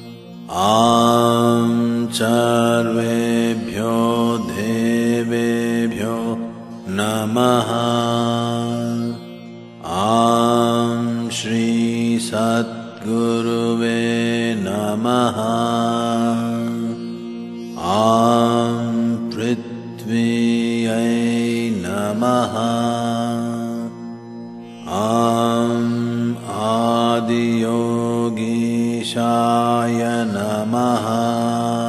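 A man's voice chanting Sanskrit mantras of the "Aum … Namaha" kind in long, slow, melodic phrases over a steady drone. There are four phrases, each starting after a brief breath pause about every seven to eight seconds.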